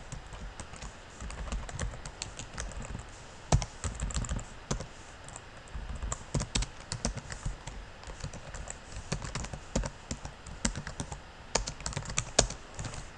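Typing on a computer keyboard: irregular key clicks in uneven runs, with one louder keystroke about three and a half seconds in.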